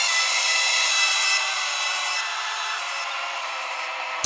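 Harsh, grating synthesized noise drone layered with many steady high tones and no bass or drums, from a doomcore electronic track; it eases off slightly toward the end.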